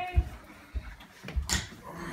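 Handling noise from people walking in with luggage: a few dull thumps and one sharp knock about a second and a half in, with brief bits of voice.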